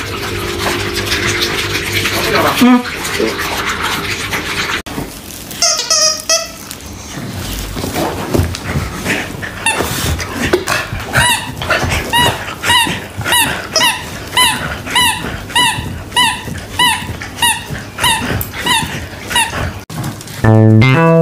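Corgi barking in a long run of short, high barks, about two a second, through the second half. The first seconds hold mixed household noise with a steady hum.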